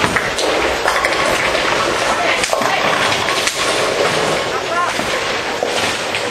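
Busy ten-pin bowling hall: a steady din of many voices, broken by repeated short clatters of balls and pins on the lanes.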